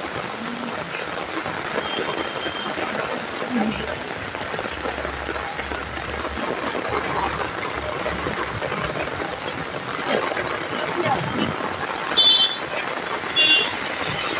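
Steady hiss of rain falling on open umbrellas and wet pavement, with faint voices under it. Two short, high chirping sounds come near the end.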